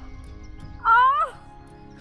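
A woman's short cry of pain, rising then falling, about a second in, after a fall; soft background music underneath.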